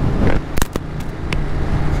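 Ducati Monster 937's Testastretta L-twin engine running through its stock exhaust while cruising, a steady low rumble. A few sharp clicks come between about half a second and a second and a half in.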